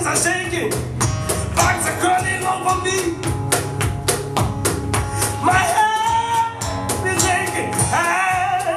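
Live acoustic music: a steel-string acoustic guitar strummed over cajon beats, with a man's voice singing two short phrases and a quick run of sharp percussive strikes between them.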